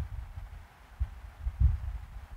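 Irregular soft low thuds and rumble, the knocks of a stylus writing on a pen tablet carried into the microphone, strongest around a second in and again shortly after.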